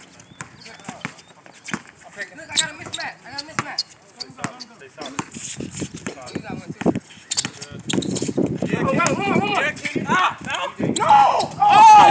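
A basketball bouncing on an outdoor hard court as it is dribbled, in short irregular thuds. From about two-thirds of the way in, players' voices call out loudly over it.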